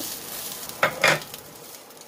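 Spatula stirring and scraping a dry-frying paste of minced garlic, peppercorns and coriander root around a nonstick wok, with a light sizzle. There are two loud scrapes about a second in.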